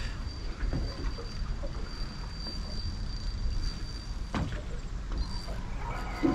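Steady low rumble and hiss from a small aluminium boat drifting on the river, with a faint steady high whine and one sharp knock about four and a half seconds in.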